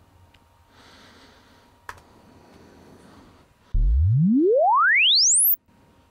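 Loudspeaker playing a sine sweep, a measurement signal for gauging speaker-to-microphone latency. The single pure tone rises smoothly from deep bass to a very high whistle in under two seconds, at an even level, and cuts off suddenly. It is picked up by a measurement microphone about two metres away, and a single faint click comes a couple of seconds before it.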